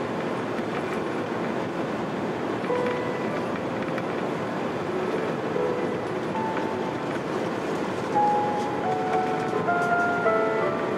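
Steady rushing roar inside the cabin of an Airbus A350-900: its jet engines and the airflow, heard at a window seat. From about three seconds in, background music with a melody of single notes comes in and grows stronger toward the end.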